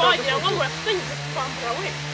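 Voices talking back and forth, a young woman among them, over a steady low hum and hiss.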